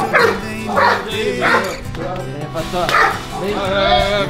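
A dog barking several times in short separate bursts, with background music running underneath.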